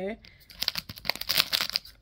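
Clear plastic wrap on a cookie tin crinkling as the tin is handled, a dense run of crackles from about half a second in until near the end.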